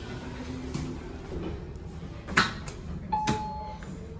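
Elevator doors sliding open with a faint hum, followed by two sharp clicks about two and a half and three and a quarter seconds in. A short electronic beep lasting under a second sounds just after three seconds.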